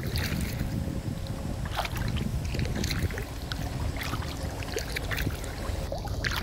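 Water splashing and dripping from kayak paddle strokes, in short scattered splashes, over a steady low rumble of wind on the microphone.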